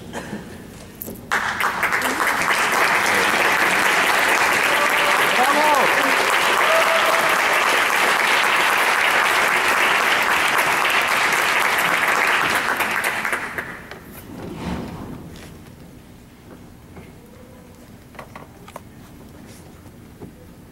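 Audience applauding, starting about a second in and dying away after about twelve seconds, followed by a hushed hall with a few faint knocks.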